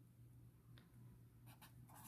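Near silence with a few faint strokes of a pen on paper in the second half, as writing begins.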